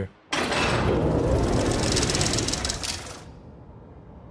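Sound-effect transition: a loud rushing noise with a fast mechanical rattle, dying away about three seconds in to a low rumble.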